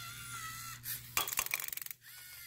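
LEGO EV3 robot arm motor whining faintly as the arm moves, then an M&M candy drops into a clear plastic cup and rattles, a quick run of clicks in the second half.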